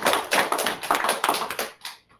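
People clapping their hands in applause, the claps thinning out and dying away near the end.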